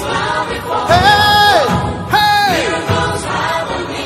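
Gospel worship song: a lead voice and choir sing with band accompaniment, holding two notes that each slide down at the end, about a second and two seconds in.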